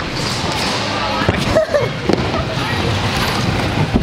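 Mini scooter's small wheels rolling over a plywood skatepark ramp, with several sharp knocks from the scooter hitting the wood; the loudest comes at the very end.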